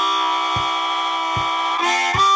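Blues harmonica cupped in both hands, holding one long chord that moves to new notes near the end. Two low thumps keep time under it.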